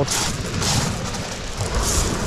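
Pebbles of a shingle beach crunching and rattling in three noisy bursts about a second apart, over a low rumble.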